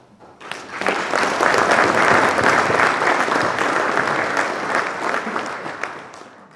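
Audience applauding in a hall: the clapping starts about half a second in, swells quickly, holds, and dies away near the end.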